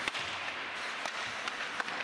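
A few sharp cracks of ice hockey play, stick and puck striking the ice and boards, the first just at the start and the others roughly a second apart, over the steady noise of the rink.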